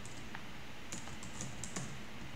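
Typing on a computer keyboard: a handful of separate keystroke clicks, one early and a quicker run of them in the second half.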